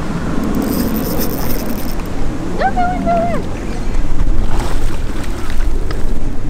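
Wind buffeting the microphone with a steady low rumble. Partway through, a short exclamation is held on one pitch for under a second.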